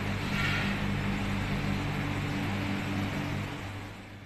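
Steady mechanical hum with an even hiss from commercial kitchen machinery, the kind made by refrigeration units and ventilation fans. It fades out near the end.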